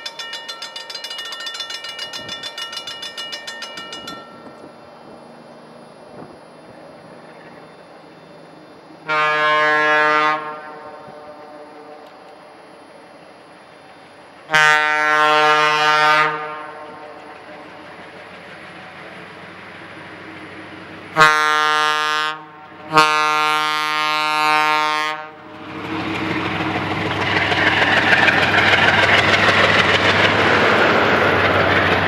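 A railroad crossing bell rings for about the first four seconds. A diesel locomotive's air horn then sounds the grade-crossing signal: two long blasts, a short one and a final long one. The snow-plow train then arrives with a loud, rising rush of engine and plowed snow that lasts to the end.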